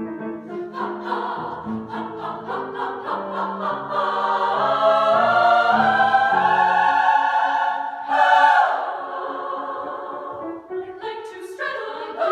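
Women's choir singing a choral piece, building to a loud sustained passage in the middle, with a sudden loud accent about eight seconds in, then softer before swelling again near the end.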